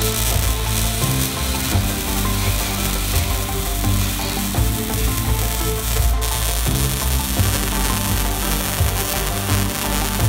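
Arc welding on steel plate: a steady, continuous crackle and sizzle from the welding arc. Background music with sustained chords that change every couple of seconds plays underneath.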